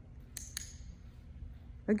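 A TagTeach tagger clicking twice in quick succession, press and release, marking the handler's foot landing on the blue tape target.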